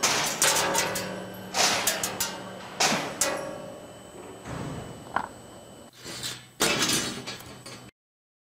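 Thin cut steel sheet being lifted off a laser cutter's metal slat bed, clanking and scraping against the slats in a run of knocks with short metallic rings. The sound stops suddenly near the end.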